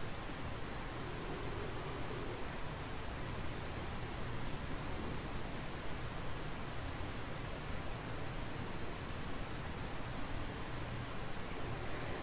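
Steady hiss of background room noise picked up by a microphone, with no distinct events.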